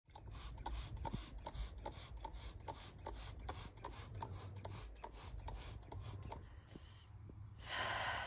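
Hand-pumped trigger spray bottle of permethrin squeezed over and over: a quick run of short hissing squirts, about two and a half a second, that stops about six and a half seconds in.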